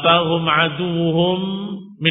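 A man's voice chanting Arabic in one long, drawn-out melodic line, in the style of Quran recitation, fading out just before the end.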